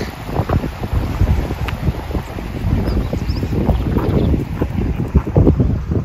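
Wind buffeting the microphone in uneven gusts, a loud low rumble.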